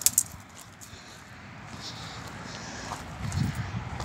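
Footsteps on railway ballast gravel, a low crunching that gets louder near the end.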